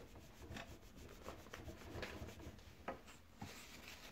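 Damp kitchen sponge rubbed back and forth on a painted drawer front, wiping off chalk-marker drawing: faint, irregular scrubbing strokes.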